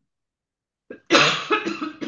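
A woman coughing several times in quick succession into her hand, starting about a second in after dead silence.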